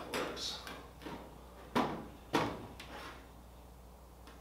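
Sheet metal knocking and clunking as a stainless steel firewall is shifted against aluminium fuselage sides to line up cleco holes: a few sharp knocks, the two loudest about half a second apart near the middle, each ringing briefly.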